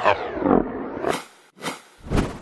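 A growling, roar-like sound effect in a dance mix, sliding down in pitch over about the first second, followed by two short noisy hits before the beat comes back.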